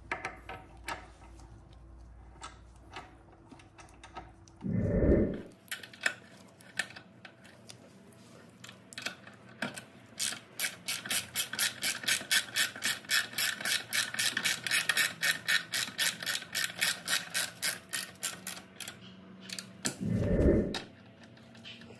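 Hand ratchet with an extension clicking as it turns a docking-point bolt into a motorcycle's rear fender strut: a few loose clicks at first, then an even run of clicks, about three a second, from about six seconds in to near the end. A dull thump about five seconds in.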